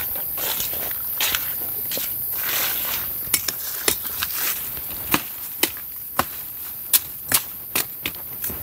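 Footsteps rustling through dry leaf litter, then from about three seconds in a string of sharp, irregular cracks and snaps, like dry twigs breaking underfoot, over a steady high hiss.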